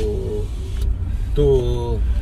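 Steady low rumble of a car's engine and tyres heard from inside the cabin as it drives slowly.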